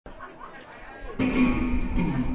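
Amplified electric guitar struck about a second in, one held note or chord ringing on loudly over quieter room noise.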